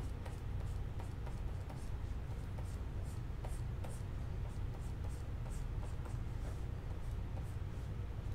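Stylus pen scratching on a Wacom graphics tablet in short, light strokes one after another, over a steady low hum.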